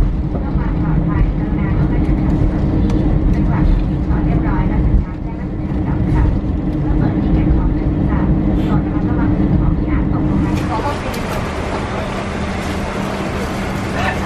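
Boeing 747 cabin noise as the plane rolls along the ground after landing: a steady jet-engine rumble with a steady hum, easing slightly about five seconds in. About ten and a half seconds in it changes abruptly to the brighter, hissy air-conditioning noise of the cabin.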